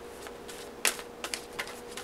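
Tarot cards being handled and set down on a cloth-covered table: a few light clicks and taps, the sharpest a little before halfway, over a faint steady hum.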